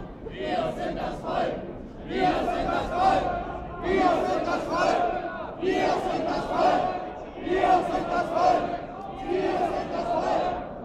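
Crowd of marchers chanting a short slogan in unison, the same phrase repeated about every two seconds.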